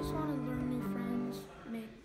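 Acoustic guitar music: plucked notes ringing on and changing a couple of times, quieter after about a second and a half.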